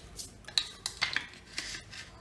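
Clear plastic drawing instruments, a set square and a scale ruler, being slid and set down on drawing paper: about half a dozen light clicks and taps.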